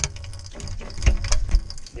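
A PVC pipe being worked by hand into its pipe fitting inside a plastic tank: a knock at the start, then a quick run of knocks and clicks about a second in as it is pushed into place, over rubbing and handling noise.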